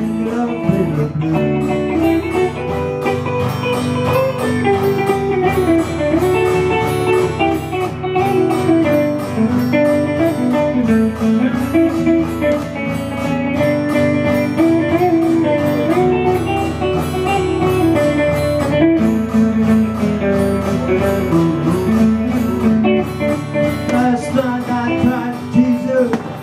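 Live blues on electric guitar with accompaniment: an instrumental passage between sung verses, the guitar picking out a moving melody.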